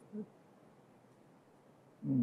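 Near silence: room tone during a pause in a man's speech, with one short, low voice sound just after the start.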